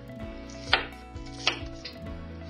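Chef's knife mincing onion on a wooden cutting board, with two loud knocks of the blade on the board less than a second apart, over background music.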